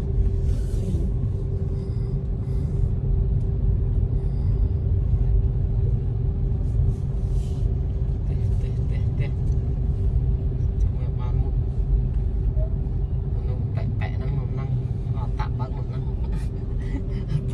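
Inside a moving car's cabin: the steady low rumble of engine and road noise, with a constant hum held at one pitch.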